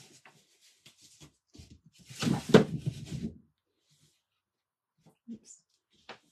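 A wooden craft board being shifted and turned on a paper-covered work table: faint small rustles and ticks, then a louder scrape and knock lasting about a second, a little over two seconds in.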